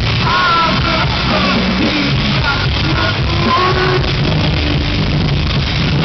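Live rock band playing loud: electric guitars, keyboard and drums.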